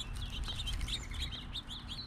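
Several small songbirds chirping, a quick run of short, high chirps overlapping one another, over a steady low rumble.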